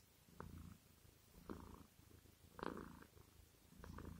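Near silence: room tone with four faint, short soft sounds spaced about a second apart.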